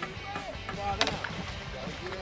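Boat engine running with a steady low hum, people's voices faintly in the background, and one sharp knock about a second in.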